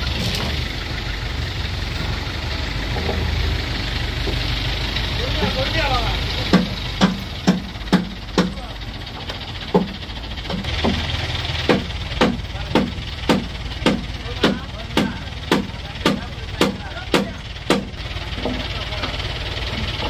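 Vehicle engine idling steadily. About six seconds in, a run of sharp knocks begins, about two a second, pausing briefly and then carrying on.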